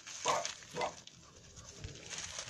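A French bulldog puppy at play giving two short yapping barks, one about a quarter second in and another just under a second in.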